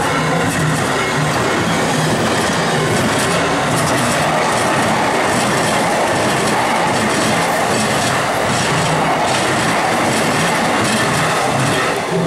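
JR E233 series electric commuter train passing close by over a level crossing: a loud, steady rush of wheels on rail with clickety-clack from the wheels over the rail joints, easing off near the end as the last car goes by.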